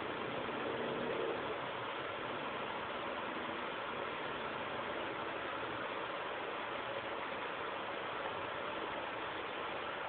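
Steady background noise with no distinct events, and a faint brief tone about a second in.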